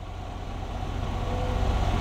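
A low, steady diesel engine rumble heard inside a semi-truck cab, swelling gradually louder.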